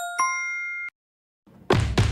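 Smartphone notification chime confirming a successful mobile payment: a short two-note ding, a low note and then a higher ringing one, cut off just under a second in. After a brief silence, louder sound comes in near the end.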